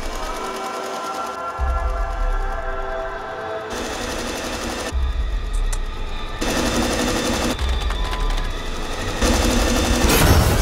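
Electric sewing machine running fast in bursts of about a second each, starting about four seconds in, over sustained trailer music with low rumbles.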